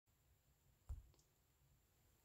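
Two faint clicks about a quarter second apart, about a second in, the first with a soft thump, over near silence: a fingertip tapping a phone's touchscreen to start playback.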